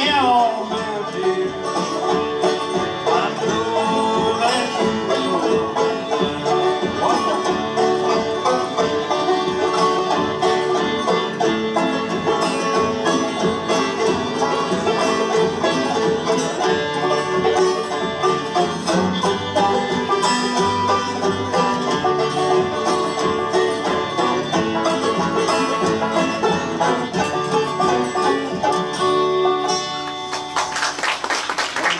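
Old-time string band playing a tune in three-finger banjo style, with two banjos, acoustic guitars and fiddle together.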